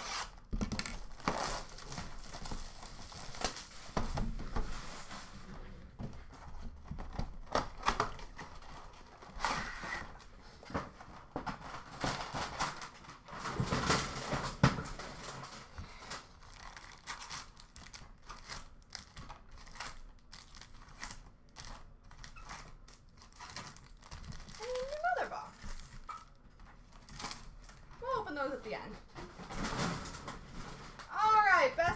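Foil-wrapped trading card packs crinkling and rustling as they are lifted out of a cardboard hobby box and stacked by hand, in uneven spells with short pauses.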